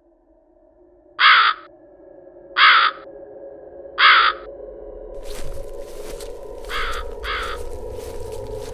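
Crow cawing: three loud, harsh caws about a second and a half apart, then two quick caws near the end, over a low, steady, eerie drone.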